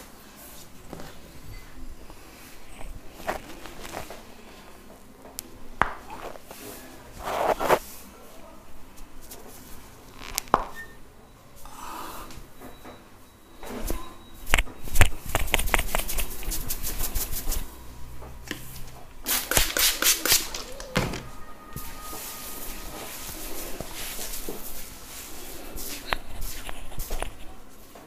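Hand massage of the head and shoulders: hands rubbing and kneading the skin and hair, with scattered slaps and knocks and a quick run of even taps about halfway through.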